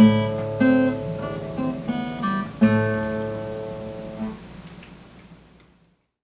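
Acoustic guitar: a few plucked notes, then a closing chord about halfway through that rings out and fades away to silence.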